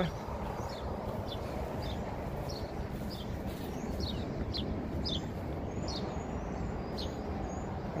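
A small bird chirping over and over, short high notes that slide downward, about two a second, over a steady outdoor background hiss.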